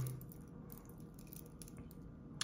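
A few faint, light clicks from the steel links of a watch bracelet being handled, over quiet room tone.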